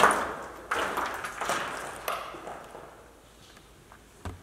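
Four sharp metallic-sounding knocks in the first two seconds, each ringing out and dying away, then fading to quiet.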